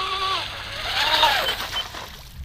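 Small RC catamaran's motor whining at a steady high pitch, dropping away as the throttle is cut, then rising and falling again with the throttle. Two short high beeps near the end.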